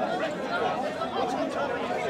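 Chatter of many people talking at once in an outdoor crowd, with no single voice standing out.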